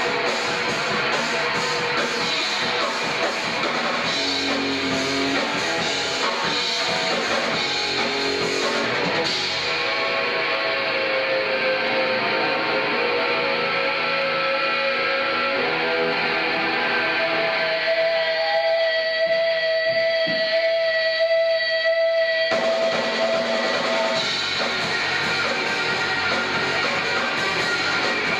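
Live rock band playing, with electric guitar and a drum kit. About nine seconds in the cymbals and drums fall away, leaving held guitar notes with one long sustained tone, and the full band comes back in near the end.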